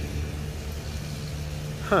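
Steady low rumble and hum of road traffic running past.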